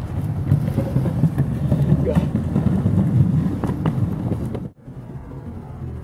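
Skateboard wheels rolling over concrete paving, giving a steady low rumble with scattered clacks. The rumble cuts off abruptly about three-quarters of the way in, leaving quieter outdoor background.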